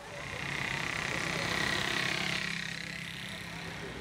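Busy street ambience of traffic and crowd voices, with a vehicle swelling past around the middle.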